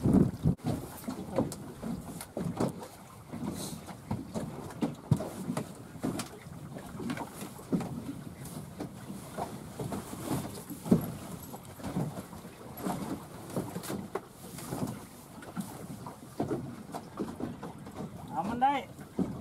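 Wind buffeting the microphone and choppy water slapping against a small boat's hull, in uneven gusts and splashes.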